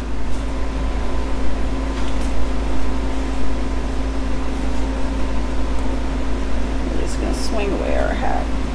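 A steady mechanical hum with a constant droning tone and a deep rumble underneath, like a fan or air-conditioning unit running.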